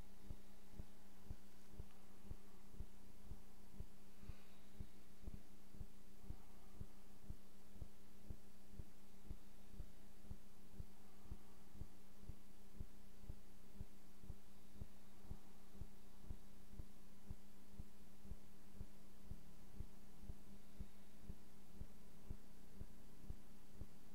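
A steady low hum with a soft, even pulse about twice a second.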